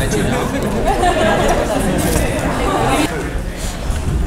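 Chatter of many people talking at once, overlapping conversations with no single clear voice, dropping a little in level about three seconds in.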